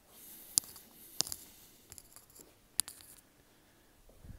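Four light, sharp clicks spread unevenly over a few seconds, over faint rustling in the first half.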